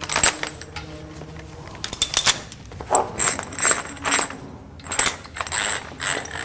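Irregular metallic clinks and knocks as a waterblasting hose's male cam lock fitting is shoved by hand through the metal guide of a rotary hose device.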